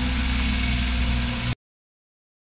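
Vehicle engine idling with a steady low hum, cutting off suddenly about one and a half seconds in.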